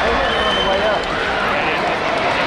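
Arena crowd noise, many voices talking and shouting at once in a large hall, with a basketball bouncing on the hardwood court during play.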